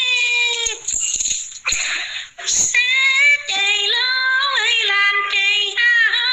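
A woman singing an unaccompanied ethnic folk song in a high voice, holding long, level notes, with a pause of about two seconds near the start. The sound is narrow, like a phone voice message.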